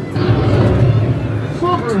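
A loud, low rumble on a theme-park train ride. It starts just after the beginning and dies away near the end, as the train heads into the mine tunnel.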